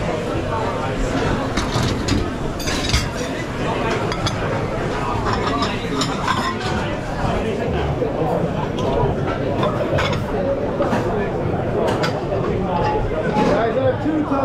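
Busy restaurant kitchen and dining-room hubbub: background chatter of voices with ceramic plates and dishes clinking now and then on a marble pass.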